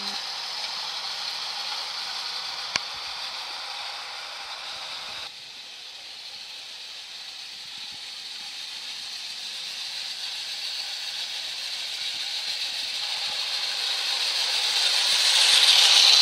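Bassett-Lowke clockwork 0 gauge Flying Scotsman and its tinplate goods wagons running on metal track: a steady high whirring rattle of the clockwork motor and wheels. There is a single sharp click about three seconds in. The sound drops away suddenly about five seconds in and then grows steadily louder as the train comes close near the end.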